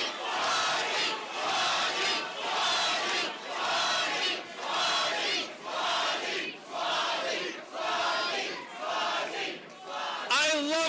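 A crowd of supporters chanting in unison, a shout repeated in a steady rhythm about every three-quarters of a second.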